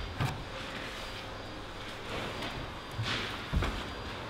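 A climber's hands and rubber-soled shoes knocking and scuffing on the holds of an indoor bouldering wall: one soft knock just after the start, then two more about three seconds in, the second with a dull thud.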